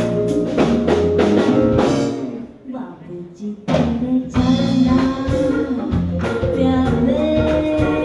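Live band with keyboard and drum kit, and a woman singing. The band stops suddenly about two seconds in, then comes back in with her voice carrying long held notes.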